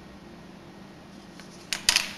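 Quiet room, then near the end a quick cluster of sharp plastic clicks as the detached back cover of a Canon S100 compact camera is handled.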